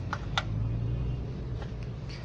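A steady low hum of an idling engine, with two short light clicks in the first half second as a hand handles the plastic sensor connector.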